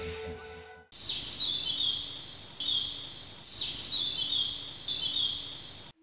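A music sting dies away in the first second. Then birdsong starts suddenly over a steady outdoor hiss: four calls, each a quick falling note followed by a run of high, rapid trilled notes. It cuts off just before the end.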